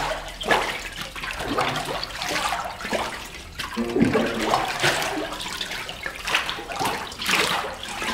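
Water and paper pulp sloshing across a hanji papermaking screen as the hanging mould is dipped into the vat and swept back and forth, in repeated surges about once a second.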